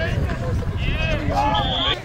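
Unclear shouting from players and spectators on the sideline, over wind rumble on the microphone. Near the end a short, steady referee's whistle blows, ending the play.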